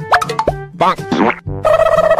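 Cartoon comedy sound effects: a quick pop with rising pitch slides, then warbling glides up and down in pitch. A loud held tone of several notes sets in about a second and a half in.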